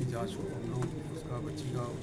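Speech: a man talking, over a steady low hum.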